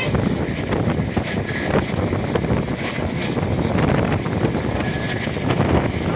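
Rumble and rattle of a moving passenger train coach, with wind buffeting the microphone at the open window.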